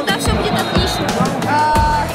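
A boy talking over background music.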